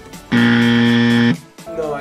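Game-show style wrong-answer buzzer sound effect: one steady, low buzz lasting about a second that cuts off suddenly, signalling a failed attempt.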